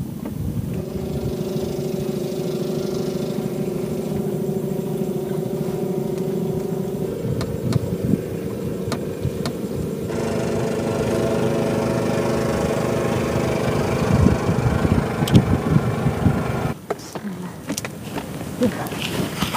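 An engine running steadily, its pitch stepping up about seven seconds in, with a few knocks near the end.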